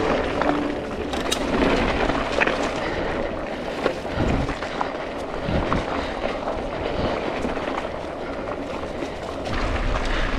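Santa Cruz 5010 full-suspension mountain bike descending a dirt singletrack at speed: a steady rushing noise of tyres on dirt, leaves and rocks, with many small clicks and knocks from the bike over rough ground.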